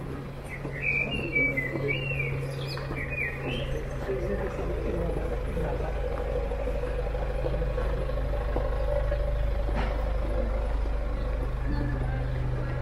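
Outdoor street ambience beside a road: a bird chirps several times for a few seconds near the start, over a steady hum of traffic that swells slightly later on, with passers-by's voices in the background.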